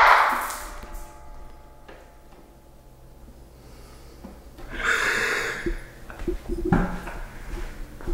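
Dying echo of a plastic bottle that has just burst from dry-ice pressure, fading out over the first second in a room. Then quiet room tone, a short rustling rush about five seconds in, and a few light knocks near the end.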